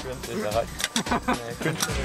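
Indistinct voices over background music.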